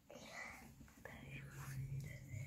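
Faint whispered speech, low and indistinct.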